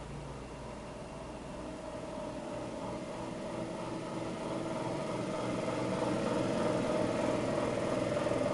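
Steady hum of a fan motor with a constant tone, growing gradually louder.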